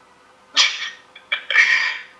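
A man laughing: two short, breathy bursts of laughter, the first about half a second in and the second, longer one near the end.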